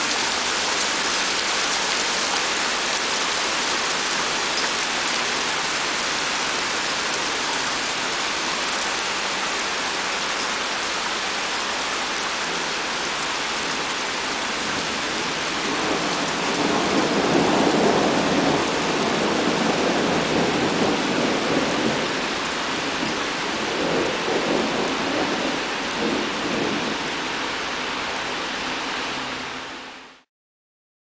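Heavy rain pouring onto a river, a steady hiss. About sixteen seconds in, a long roll of thunder rumbles for several seconds, and a lighter rumble follows a few seconds later.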